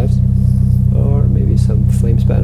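Toyota Celica GT-Four ST205's turbocharged four-cylinder engine idling steadily shortly after a cold start, with a low, rapidly pulsing exhaust note.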